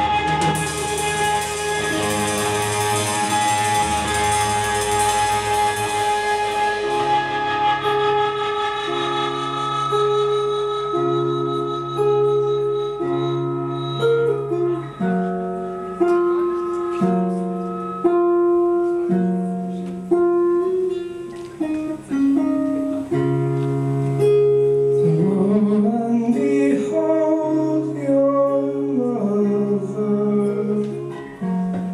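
Live indie-rock band music. A loud held chord with a cymbal wash dies away over the first six seconds or so, then a guitar picks out slow single notes, changing about once a second.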